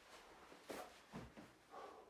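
Near silence, with a few faint soft thuds and rustles as a person lowers his body onto a foam exercise mat.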